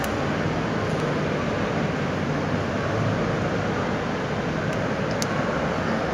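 Steady hiss and hum of a large church interior's ambience, with a few faint clicks, about a second in and twice near the end.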